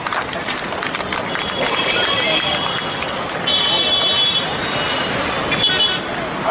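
Outdoor crowd noise: many voices talking and calling out at once, with no single clear speaker, growing louder a little past halfway.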